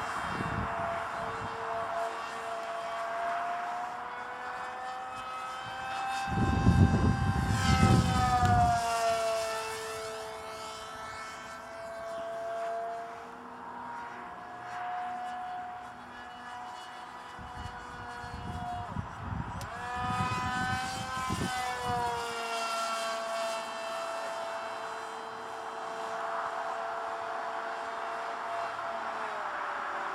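Electric motor and 7x5 propeller of a radio-controlled foam Eurofighter Typhoon model in flight, a steady whine whose pitch swoops down and back as the model passes, about eight seconds in and again around twenty-one seconds. A low rumble, like wind on the microphone, comes in twice, loudest about seven seconds in.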